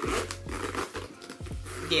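Metal zipper on a Kate Spade heart-shaped crossbody bag being drawn along its curved track, running smoothly without catching.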